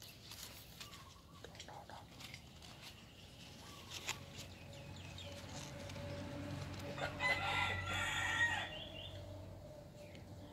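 A rooster crowing once, starting about seven seconds in and lasting under two seconds. A few faint clicks come before it.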